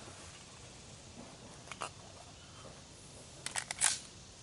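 Firearm being loaded: a faint click about two seconds in, then a quick run of sharp metallic clicks near the end as the magazine is seated and the gun is readied to fire.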